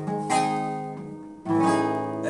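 Acoustic guitar: two strummed chords about a second apart, each left ringing and fading.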